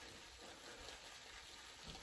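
Faint swishing of a wet Declaration Grooming B10 shaving brush being swirled over a hard soap puck in its tub, loading the brush with soap.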